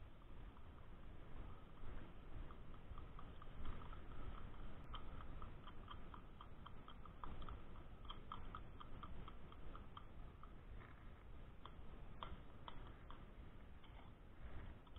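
Metal spoon stirring thick mayonnaise-based tartar sauce in a plastic bowl: faint wet squishing, with a run of light ticks of the spoon against the bowl, about three a second, through the middle.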